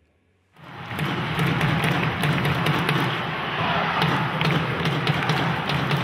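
Closing ident sound effect: a dense, loud rumble with many crackles running through it, swelling in about half a second in after a moment of near silence.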